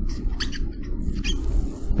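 A pen squeaking across a writing surface in a series of short strokes, several a second, as a diagram is drawn and labelled, over a steady low hum in the recording.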